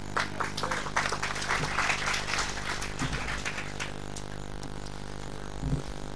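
Audience applauding, a spatter of hand claps that thins out after about four seconds, over a steady electrical hum from the sound system.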